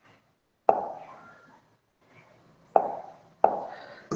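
Three short taps of a pen against the board, about two-thirds of a second in and twice near the end, each dying away with a brief echo.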